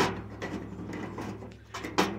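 Rusty 1957 Plymouth trunk latch worked by hand on its striker, metal clicking and scraping, with a sharp click at the start and another at the end. The latch is dry and stiff and wants oiling.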